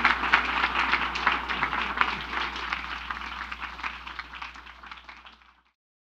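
Audience applauding, the clapping gradually fading away and cutting off to silence near the end.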